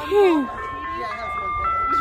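Ice cream truck chime music: a simple melody of steady electronic tones stepping from note to note. A short vocal exclamation sounds just after the start.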